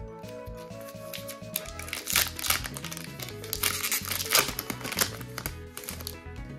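Foil wrapper of a Pokémon trading card booster pack crinkling and crackling as it is pulled open by hand, with a few sharper crackles along the way, over background music.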